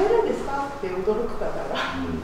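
Speech only: a woman talking in Japanese, her voice rising sharply in pitch at the start.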